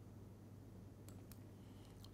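Near silence with a steady low hum, broken by two faint computer-mouse clicks just after a second in as a web link is clicked.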